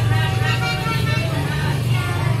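Voices of teachers and small children, some of it sung, over a steady low hum.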